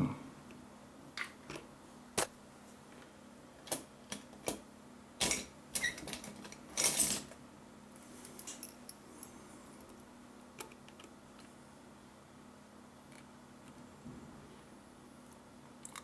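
Small clicks and light knocks of hands working at a workbench, about ten scattered over the first seven seconds, then only a faint steady low hum.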